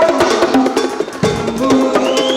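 A fast conga solo: bare hands striking a set of congas and small drums in a dense run of strokes, with ringing open tones. The playing thins briefly about a second in, then a deep bass stroke and the rapid strokes pick up again.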